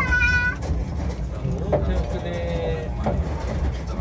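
High-pitched child's voice calling out a couple of times over a steady low rumble from the small steam train.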